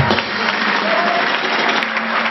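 A crowd applauding, a dense, steady clapping of many hands.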